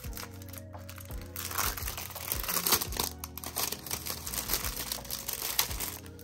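Clear plastic packaging crinkling and rustling in irregular bursts as hands unwrap and handle cash envelopes, over steady background music.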